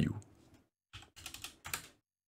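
A few quiet computer-keyboard keystrokes in quick succession about a second in, typing a new number into a field.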